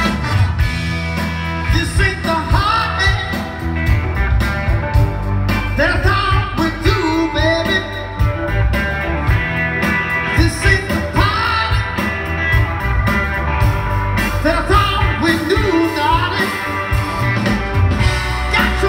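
A live soul band playing: a male lead singer over electric guitar, bass, drums and keyboards.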